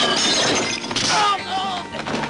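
Glass shattering and crashing in a film fist-fight, one sharp crash at the start and another about a second in, over shouting voices and background music.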